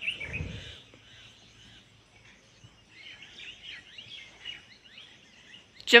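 Small birds chirping on and off, with one low thump about a third of a second in.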